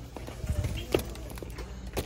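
A few light wooden knocks as a bamboo cutting board is handled against a store shelf, over faint background music.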